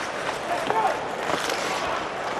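Ice hockey arena during live play: steady crowd noise with skates scraping on the ice and a faint voice now and then.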